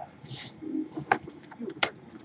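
A few sharp clicks and taps of trading cards being handled and set down on a tabletop, with a faint low murmur underneath.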